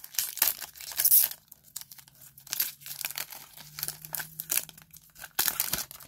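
Foil Pokémon TCG booster pack wrapper being torn open and crinkled by hand: a quick run of sharp crackling tears in the first second or so, lighter intermittent crinkling after, and another loud crinkle near the end.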